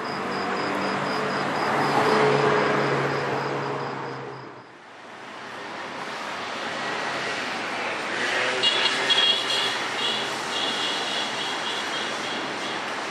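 Car engines at low speed on a city street: one engine swells to its loudest about two seconds in and fades away, then, after a break, a second engine runs steadily and a little louder near the end, consistent with the Mercedes-Benz G 500 4x4² moving on the road.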